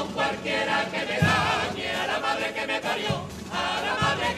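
A Cádiz-style carnival singing group of men's voices singing together in chorus, with a deep beat about every two seconds.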